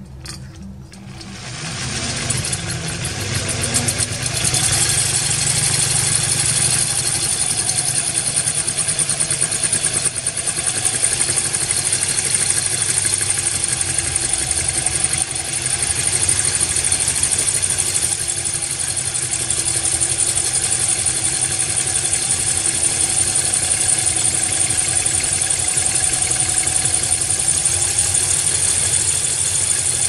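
Handheld power drill with a 1/4-inch spear-point glass bit boring a hole through 6 mm glass. The drill starts about a second in, builds up, then runs steadily, with a brief dip near the middle.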